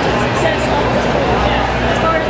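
A man's voice talking in an interview over a loud, steady background noise.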